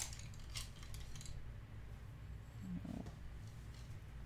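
Faint handling noise: a few light clicks and taps in the first second, over a low steady hum, with a brief low sound about three seconds in.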